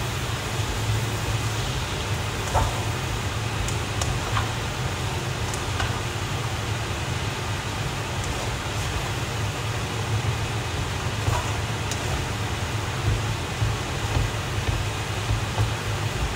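Noodles being stir-fried in a nonstick pan on an induction hob: a steady low hum and hiss, with occasional faint clicks of a plastic spatula against the pan as the noodles are tossed.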